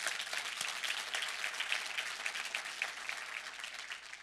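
Congregation applauding, a dense patter of many hands clapping that thins out near the end.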